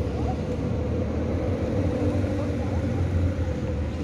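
Road traffic: a steady low rumble of motor vehicles running on the road nearby, with a held hum underneath and no sharp events.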